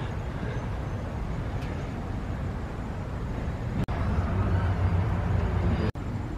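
Outdoor street ambience: a steady low rumble of traffic, a little louder in the second half, with a brief dropout about four seconds in.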